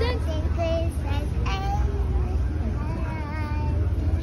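A young girl singing in short, sliding phrases without clear words, over a steady low rumble.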